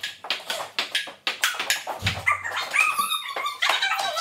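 A ping-pong ball clicking back and forth off paddles and table in a quick rally, a few strikes a second. About two seconds in there is a dull thump, followed by high-pitched wavering squeals.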